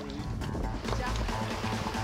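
Background music with held tones over a low steady rumble.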